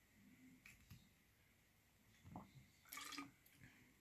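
Near silence with faint gulps as a drink is swallowed from a plastic bottle, and a brief, slightly louder sound about three seconds in.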